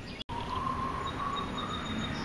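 Steady outdoor background noise with a faint thin whistling tone, cut by a brief dropout to silence about a quarter second in.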